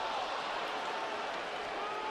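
Ballpark crowd noise: a steady murmur of the stadium crowd, with a few drawn-out voices faintly standing out.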